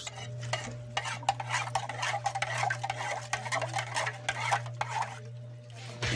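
Metal spoon stirring and scraping in a small metal pot of coffee on a wood-fired stove: a dense, irregular run of small clicks and scrapes that thins out near the end, over a steady low hum.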